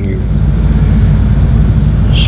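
A steady low hum with hiss, unchanging throughout.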